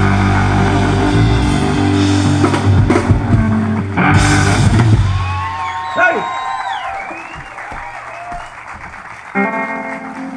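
Live rock band of electric guitar, bass guitar, drum kit and keyboard playing out the end of a song. Drum and cymbal hits run to about halfway, then the band drops away to ringing guitar notes that slide in pitch. Near the end a new held chord comes in.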